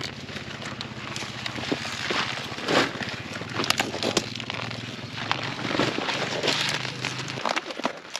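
Kohlrabi plants being pulled and cut by hand: the stiff leaves and stems rustle and crackle in many short snaps. A steady low hum runs underneath and stops near the end.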